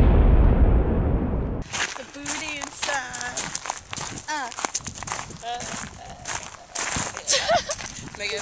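A loud, deep boom-like transition sound effect whose upper edge sinks before it cuts off abruptly about a second and a half in. Then come people's voices, talking and laughing outdoors.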